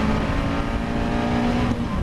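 In-car sound of a Caterham Seven 310R's 1.6-litre Ford Sigma four-cylinder engine pulling at steady revs under race power, with a break in the note near the end.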